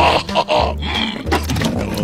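A cartoon bear character's wordless vocal noises over background music with a repeating bass line.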